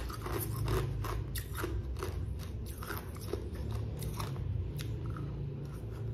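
Close-up crunching of someone chewing raw green mango, a quick run of crisp crunches about two to three a second.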